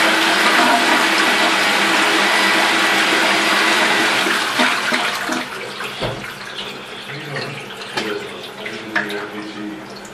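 Stainless steel toilet flushing: a loud rush of water that eases off about five seconds in. It leaves quieter gurgling and trickling as the bowl refills.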